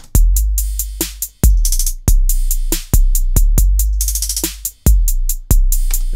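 Roland TR-808 drum-machine loop playing back: long, booming 808 kicks in an irregular grime/hip-hop pattern, under a snare and rapid hi-hats. The hi-hats' triplet note-repeats are pitched down, then back up.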